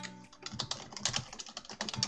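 Typing on a computer keyboard: a fast, uneven run of key clicks.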